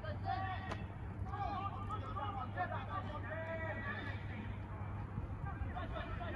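Footballers and spectators calling out during play, their voices distant and unclear, over a steady low rumble. A single sharp knock about a second in.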